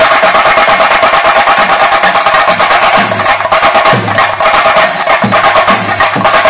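Chenda drum ensemble, played loudly with sticks: a dense, fast stream of sharp stick strokes over deeper beats that fall about once a second.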